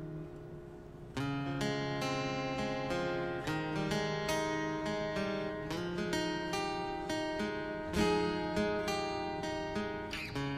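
Acoustic guitar playing in a live performance: a held chord dies away, then about a second in a run of picked notes begins and carries on, one note after another.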